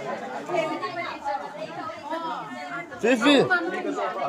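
Chatter of several voices talking over one another, with one voice louder about three seconds in.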